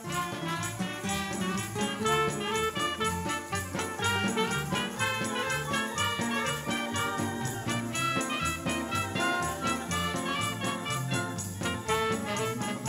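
A live band of clarinets, saxophones and trumpet with drums playing a lively dance tune, coming in right at the start over a steady quick beat of high percussion.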